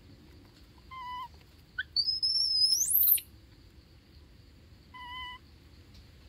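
Animal calls: a short steady call about a second in and again near the end. Between them comes a brief chirp, then the loudest sound, a high whistle of about a second that sweeps sharply upward in pitch and stops abruptly.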